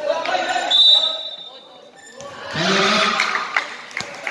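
Sounds of a youth basketball game on a concrete court: a basketball bouncing, voices calling out loudly for about a second past the middle, and a brief high squeal about a second in.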